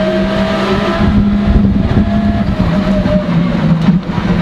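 Skoda World Rally Car's turbocharged four-cylinder engine heard from inside the cabin, holding a steady note under load with road and tyre rumble underneath. Its pitch dips slightly near the end.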